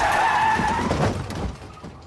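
Car tyres screeching in a skid for just over a second, then fading, with a short thud near the end: the sound of a car crashing.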